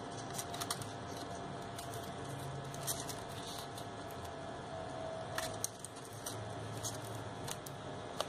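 Faint rustling and small scattered ticks of crepe paper, floral tape and thin wire being handled as flowers and leaves are wound onto a wire stem, over a faint steady hum.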